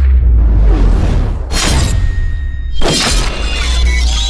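Action-film trailer soundtrack: music over a deep, steady bass rumble, with two sudden sound-effect hits, one about one and a half seconds in and a louder one about three seconds in.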